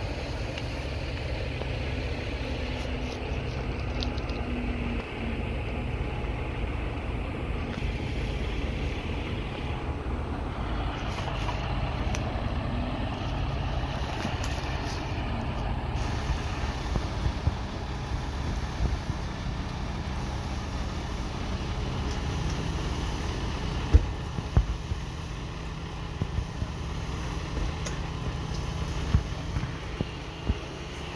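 Large emergency vehicles' engines idling, a steady low hum throughout, with several short knocks in the last few seconds.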